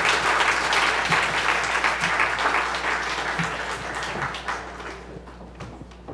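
Audience applauding: many hands clapping together, which thins out and dies away over the last couple of seconds.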